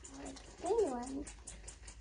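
A goat bleating once, a short call that rises and then falls in pitch.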